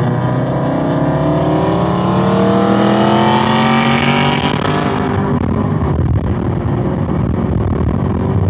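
Chevrolet Camaro ZL1's supercharged 6.2-litre V8, heard from inside the cabin, pulling hard under full throttle in third gear with its note rising steadily in pitch. About five seconds in it upshifts and the pitch drops back.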